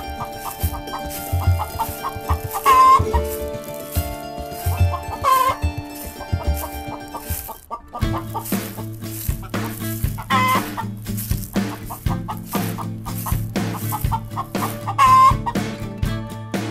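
Domestic hen clucking four times, a few seconds apart, over light plucked-string background music that picks up a bass line about halfway through.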